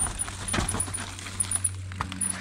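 Mountain bike clattering and jangling as it is ridden down a steep, rooty dirt trail: chain and frame rattling with many small clicks and knocks over a low steady hum.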